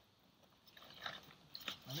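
Faint rustling and crinkling of a nylon toiletry bag being pushed into a trekking backpack, with a few soft clicks.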